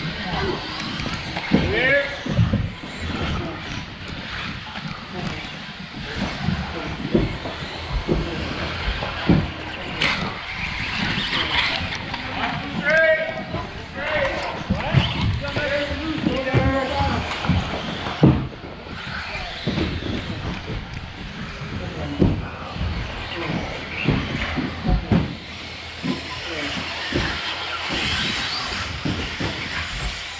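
1/10-scale 2wd electric RC buggies with 17.5-turn brushless motors racing on an indoor carpet track. The motors whine up and down with throttle, and there are repeated knocks from landings and contact, under background voices.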